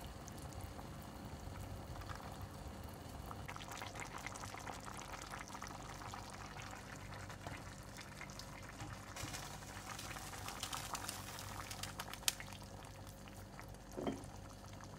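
Hot vegetable broth ladled from a simmering stockpot and poured into a pan of lentils cooking in tomato sauce: bubbling with the splash and trickle of pouring, busier in the second half. One sharp knock near the end.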